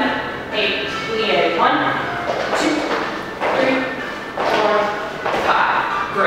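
A person's voice in short pitched phrases about a second apart, with the echo of a large room.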